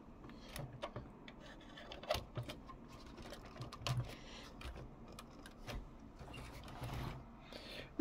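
Faint, scattered small clicks and taps of plastic toy parts being handled as a hook is fitted to couple a plastic toy trailer to a toy truck.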